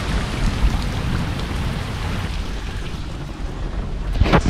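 Heavy rain falling on flooded asphalt and puddles, a steady hiss with a low rumble underneath.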